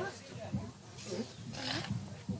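Several people's voices overlapping, indistinct, with a brief breathy hiss about three-quarters of the way through.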